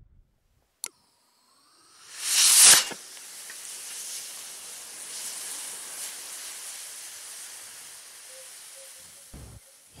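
PVC-cased sugar-fuel rocket motor firing on a test stand: a sharp click, then a rushing hiss that swells to a loud blast about two and a half seconds in and cuts off abruptly as the motor blows its end cap off, which the builders put down to over-pressurizing. A quieter steady hiss follows for several seconds.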